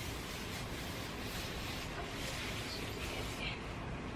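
Paper napkin rubbing wood finish into a wooden tabletop in a few back-and-forth wiping strokes that fade out about a second and a half in, leaving a steady low hiss.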